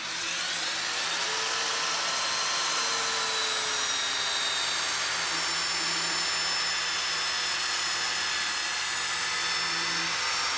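Handheld electric belt sander running steadily, its motor whine rising briefly in the first second after switch-on. It is sanding the rubber tread of a quarter midget tire spinning on a lathe, smoothing it after cutting.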